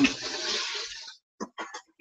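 A brief rushing, rustling noise that fades out over about a second, then a few light knocks: a box and its contents being moved about.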